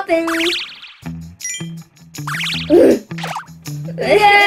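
A children's cartoon music cue with bouncy bass notes, topped by two rising, springy boing sound effects and a brief high tinkle, after a short excited voice at the very start.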